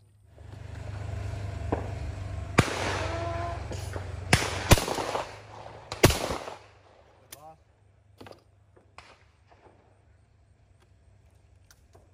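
Over-and-under shotgun firing on a sporting clays course: several sharp reports between about two and six seconds in, the last two about a second and a half apart, over a steady rush of background noise.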